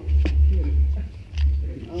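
Low voices in the background over a heavy low rumble that swells and drops every half second or so, with a couple of light knocks.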